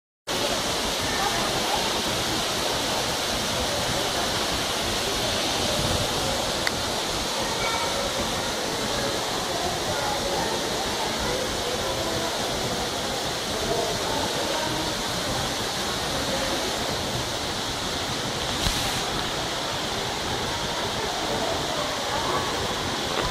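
Steady rushing background noise in an enclosed exhibit hall, with faint, indistinct voices of other visitors in the distance.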